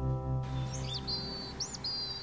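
A held acoustic guitar chord dying away, while outdoor ambience fades in about half a second in with a few high bird chirps and short trills.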